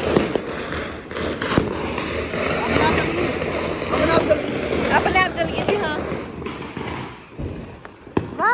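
Firecrackers and aerial fireworks going off in quick succession, a steady run of sharp bangs and crackles over a continuous din, with people's voices mixed in.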